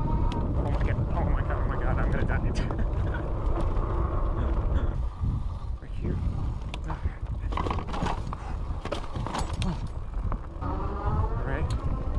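Fat-tire electric bike ridden over a dirt trail: a steady low rumble of wind on the chest-mounted microphone and tyres on dirt, with frequent clicks and rattles from the bike as it goes over bumps.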